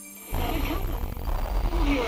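Experimental electronic music: about a third of a second in, a dense, rumbling synthesized noise texture comes in suddenly, with wavering tones sliding up and down through it.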